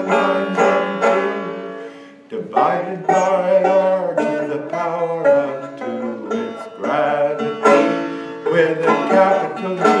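Banjo played in a lively, rhythmic picking-and-strumming pattern, the opening of a folk song. The playing dips briefly about two seconds in, then comes back strongly.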